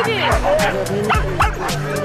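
Many harnessed husky sled dogs yelping and barking excitedly together, over background music with a steady beat.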